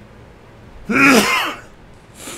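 A man coughs once, a short throaty cough that clears his throat, about a second in.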